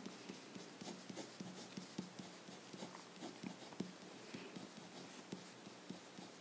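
Felt-tip marker writing on paper: faint, quick scratching strokes and taps as the pen moves.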